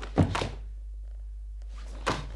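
A karate kata in progress: a heavy thud of a bare foot landing on the floor about a fifth of a second in, followed closely by the sharp snap of the cotton gi as the technique is thrown.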